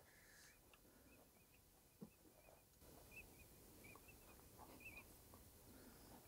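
Near silence with faint, short, high bird chirps repeating every second or so, and a soft click about two seconds in.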